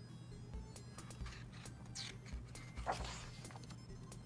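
Faint background music, with the paper rustle and swish of a picture-book page being turned about two to three seconds in, among a few light clicks of handling.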